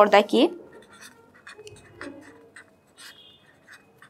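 A woman's voice finishes a sentence in the first half second, then a pen scratches on paper in faint, short, irregular strokes as words are written by hand.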